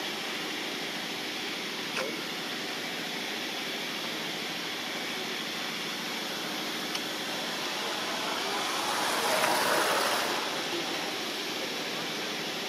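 Steady outdoor background noise with no clear animal calls, swelling briefly in loudness about nine to ten seconds in, with a couple of faint clicks.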